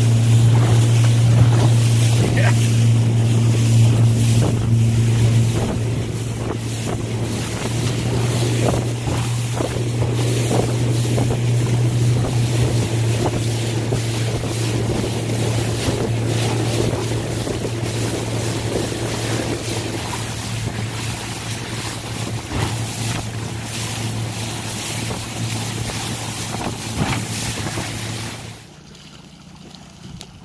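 Yamaha outboard motor running with a steady low hum as the boat moves, with wind buffeting the microphone and water rushing past the hull. Near the end the engine hum drops away sharply, leaving quieter water noise.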